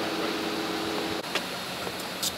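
Steady mechanical hum and hiss, with a two-note drone that cuts off abruptly a little over a second in, followed by a single short, sharp click.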